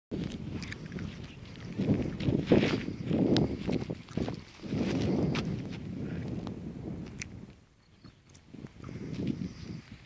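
Wind buffeting the microphone in uneven low gusts, with a few sharp clicks scattered through; it drops away about three quarters of the way through, then gusts once more.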